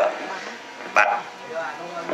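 A dog barking twice, short single barks about a second apart.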